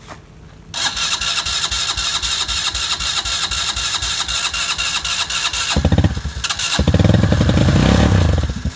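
An ATV's electric starter cranks the engine for about five seconds with a fast, even churning. Near the end the engine catches, stumbles for a moment, then keeps running: the stalled quad restarting.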